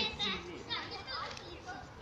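Young children's high-pitched voices calling and chattering while they play, in short bursts.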